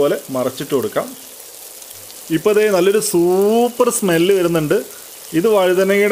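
Masala-coated brinjal (eggplant) slices shallow-frying in oil in a pan: a steady sizzle. A voice talks loudly over it in three stretches, with a pause of about a second and a half near the middle.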